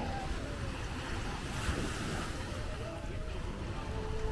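Beach ambience: small waves washing on the shore under a steady low rumble of wind on the microphone, with faint distant voices.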